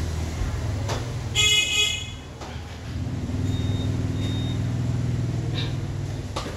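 Low, steady rumble of engine traffic with a short, high-pitched vehicle horn toot about a second and a half in.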